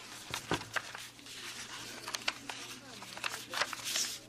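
Paper rustling and crinkling as a large manila envelope and the sheets inside it are handled, with scattered sharp crackles of paper.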